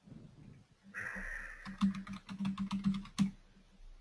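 Computer keyboard typing: a quick run of a dozen or so keystrokes lasting about a second and a half, with the last key struck hardest. The keystrokes enter a search term.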